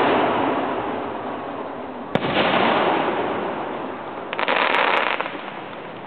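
Aerial fireworks going off: sharp reports, each followed by a long fading rumble. One report's rumble fills the opening seconds, a second report comes about two seconds in, and a dense rush of noise lasting under a second follows near the end.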